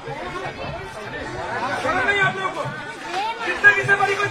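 Several people talking over one another; a man says "chal" ("move") as the crowd is moved along.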